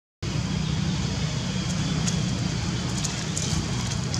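Steady low rumbling background noise with a few faint light crackles; the sound cuts out completely for a split second at the very start.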